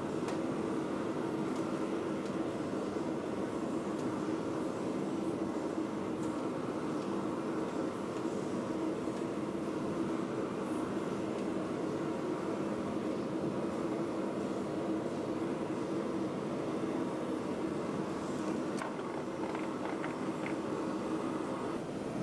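A steady mechanical roar with a low hum in it, unchanging throughout, from running forge-shop equipment. No hammer blows are heard.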